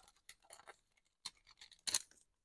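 Faint rustling and crinkling of a foil trading-card pack wrapper as a stack of cards is slid out, with a couple of brief sharper crackles, the loudest near the end.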